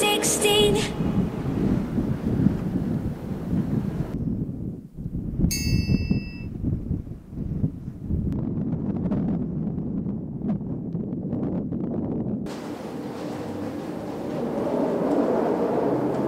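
Steady low rumbling noise with a short, bright ding-like chime about five and a half seconds in; background music fades out just after the start.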